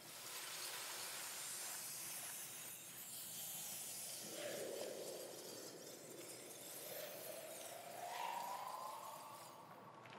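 Faint shimmering, glassy hiss of a sci-fi sound effect for a hologram materializing, with a slow rising tone through the second half.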